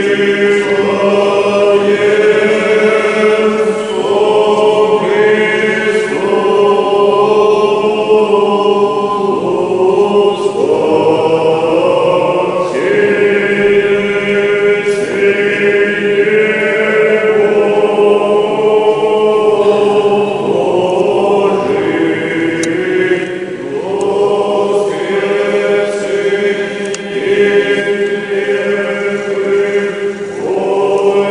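Church choir singing Orthodox liturgical chant in harmony over a steady held low note, in phrases with short breaks between them.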